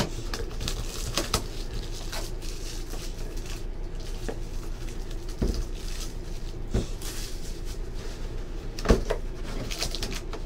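Clear plastic shrink-wrap crinkling as it is torn and pulled off a cardboard trading-card hobby box, then the box's cardboard flaps being opened, with a few light knocks of the box being handled.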